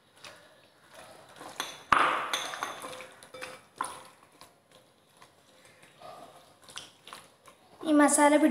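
Crockery knocks and clinks as small ceramic bowls and plates are handled on a stone countertop, the loudest a sharp knock about two seconds in, with a few lighter clinks after it.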